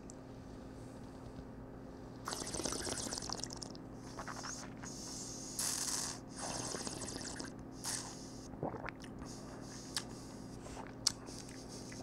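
Red wine being tasted: a sip taken, then several short hissing draws of air sucked through the wine in the mouth to aerate it, with soft swishing and wet mouth sounds in between, the loudest near the middle.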